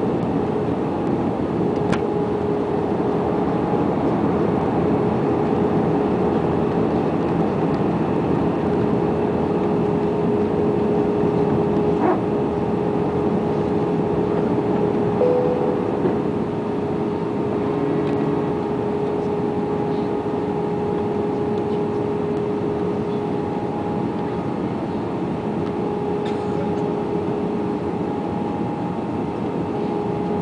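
Steady cabin noise of an Airbus A320 in descent: engine and airflow noise with a constant hum-like tone running through it, heard from inside the cabin by a window seat.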